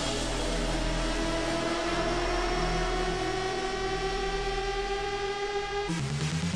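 Electronic dubstep breakdown: a steady deep sub-bass under fast low pulsing, with a synth tone rising slowly in pitch throughout. It cuts off sharply at the end as the track moves into its next section.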